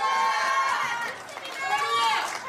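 Shouted speech: raised voices exclaiming "Hallelujah!"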